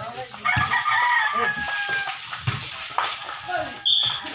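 A rooster crowing once, one long call of about a second and a half that ends on a held note, over crowd voices and the thuds of a basketball being dribbled.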